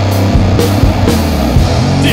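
Heavy metal band playing at full volume: electric guitars over bass and drums in a dense, continuous wall of sound.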